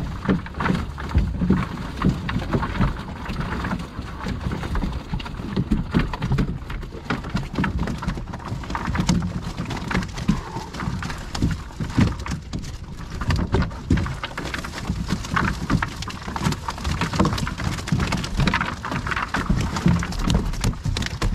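Water dripping and pattering off a wet cast net onto the skiff's deck and the water as the net is lifted and gathered, a dense, irregular patter like rain.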